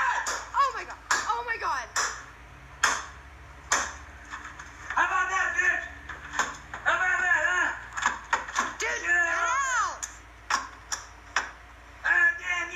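A man yelling while a PlayStation 4 is smashed with repeated sharp blows, a dozen or so hits spread irregularly through the stretch, heard played back from a video on a screen.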